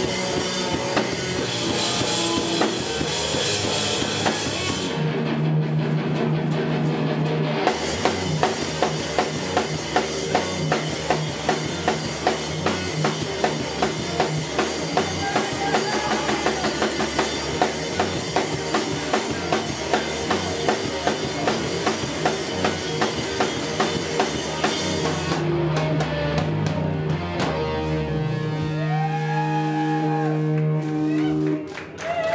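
A live rock band playing: electric guitar, bass guitar and a Pearl drum kit keeping a steady beat of about two hits a second. Twice the drums drop away briefly while a low note is held, about five seconds in and again near the end.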